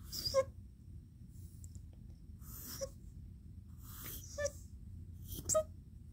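Pencil drawing strokes on paper, heard as a few short scratches about a second apart, mixed with brief breathy sounds from the person drawing.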